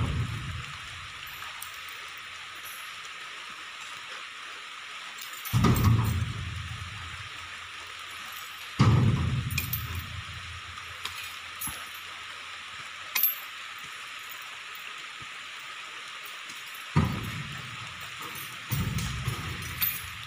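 Heavy rain falling steadily, broken by four heavy thuds several seconds apart, the loudest about nine seconds in.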